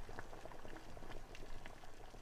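Faint, irregular small pops and crackles, like liquid bubbling or gently sizzling.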